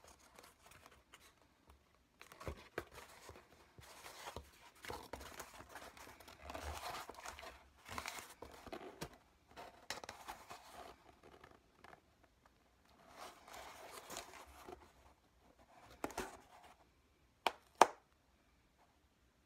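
Sheets of EVA floor-mat foam being handled, flexed and pressed against each other and the cutting mat: irregular rubbing and scuffing, with two sharp knocks near the end.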